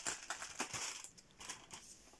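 Cardboard door of a chocolate advent calendar being torn open by fingers: a run of crinkling crackles that thins out after about a second.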